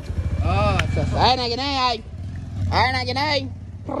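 Speech over a steady low engine-like rumble, such as a passing vehicle, that comes in at the start and fades toward the end.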